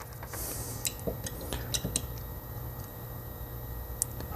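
A scatter of small clicks and a brief scrape: metal multimeter probe tips being worked against the pins of a supercharger bypass valve's electrical connector.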